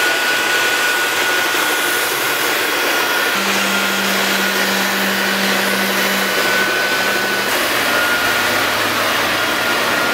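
Vacuum cleaner motor running steadily: a loud rushing hiss with a constant high whine. A lower hum comes in a few seconds in and changes pitch downward near the end.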